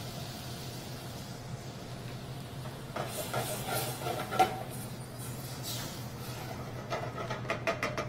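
Curry paste and freshly added coconut water simmering in a stainless saucepan with a faint hiss, while a wooden spatula stirs the pot. A steady low hum runs underneath.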